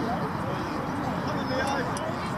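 Distant voices of players and onlookers at a youth football match, shouting and chatting, over a steady low rumble on the microphone.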